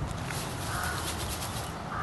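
A single short animal call about a second in, over a low steady outdoor rumble, with a few light ticks near the start.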